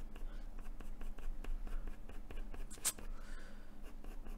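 Pencil crayon scratching on paper in many quick, short strokes as fur is drawn, with one sharper click about three seconds in. A steady low hum runs underneath.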